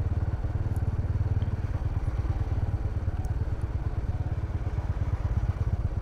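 Motorbike engine running steadily as it is ridden at low speed, a low, even rumble with road noise over it.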